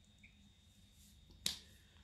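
Near silence, broken by a single short, sharp click about one and a half seconds in.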